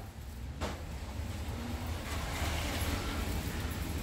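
Rainy-weather noise through an open front door: a steady hiss of rain and wet-street traffic that swells about halfway through, over a low rumble of wind on the microphone. One sharp click about half a second in.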